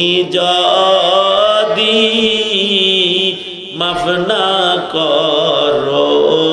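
A man's voice chanting Arabic in long, drawn-out melodic lines, with one short break for breath about three and a half seconds in.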